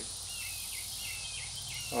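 Steady high-pitched insect chorus, with a short falling chirp repeating about every half second.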